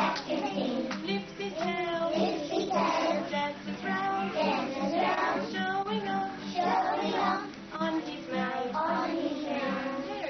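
A group of young children singing a song together to a strummed classical acoustic guitar.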